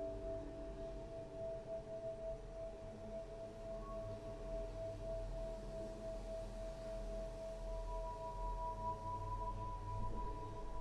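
Ambient music of long held tones: one steady tone carries through most of the stretch, and a higher tone comes in about three-quarters of the way through, over a low rumble.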